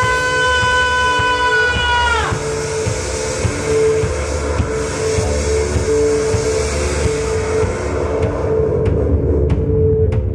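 Live band music on keyboards and drums: a long held note with strong overtones slides down in pitch and stops about two seconds in, over a repeating note that pulses on and off and a low pulsing beat.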